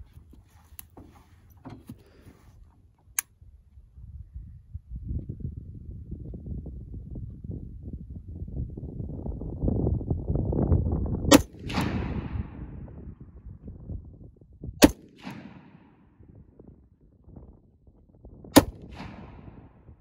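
Three single rifle shots from a Ruger Mini-14 in .223, fired about three and a half seconds apart starting some eleven seconds in, each sharp crack followed by a short echo.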